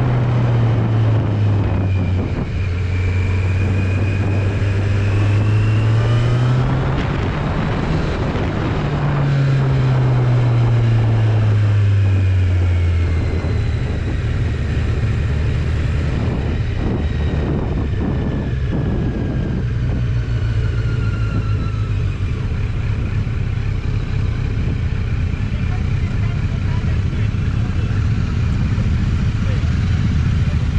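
Kawasaki Z900's inline-four engine running under the rider, with road and wind rush. Its note falls, climbs again about four to seven seconds in, falls once more, then settles into a low, steady running from about thirteen seconds in as the bike slows.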